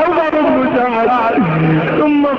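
A man's voice in drawn-out, chant-like Arabic mourning recitation of Imam Hussain's martyrdom, the pitch bending on stretched syllables, then dropping to a long held low note near the end.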